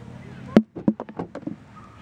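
Handling noise: a sharp knock about half a second in, then a quick run of lighter clicks and taps.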